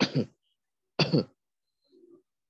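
Two brief vocal sounds from a person, about a second apart, like a throat being cleared.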